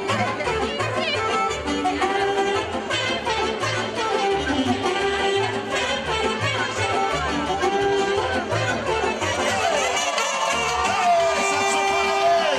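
Saxophone-led folk dance music played live, with a steady pulsing bass beat under the melody; the beat drops out briefly near the end.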